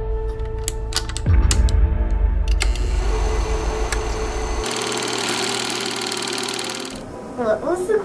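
Vintage movie camera mechanism as a sound effect: a few sharp clicks, then a fast mechanical clatter of the running film for about two seconds. Background music and a low drone sit underneath.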